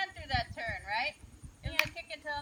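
A person's high-pitched voice talking over soft low thuds of a horse's hooves in arena sand, with one sharp click near the end.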